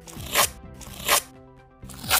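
Masking tape pulled off its roll in two short ripping pulls, about half a second and a second in, over background music.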